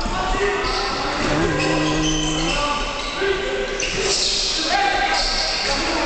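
Live basketball game sounds in a large gym: sneakers squeaking on the court floor several times and a ball bouncing, with a voice calling out a long held shout about a second and a half in, all echoing in the hall.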